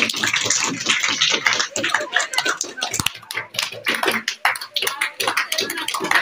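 A small crowd clapping, with many quick uneven claps, while several people talk over it.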